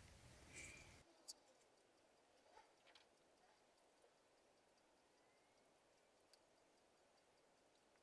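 Near silence, with a few faint, light taps of a metal spoon against a bowl.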